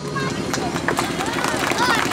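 Crowd chatter: many voices talking and calling over one another at once.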